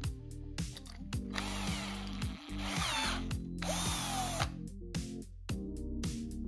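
A power tool running in two bursts, a hissing whir with a wavering whine, from about a second in until past the middle, over background music with a steady beat.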